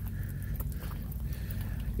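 Footsteps crunching on gravel, with faint scattered ticks over a low steady rumble.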